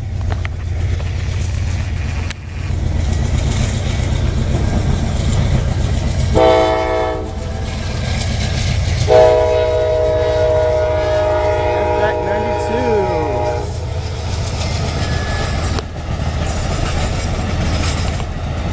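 Amtrak passenger train's multi-note horn at a grade crossing: a short blast about six seconds in, then a long blast of about four and a half seconds starting about nine seconds in, over a steady low rumble.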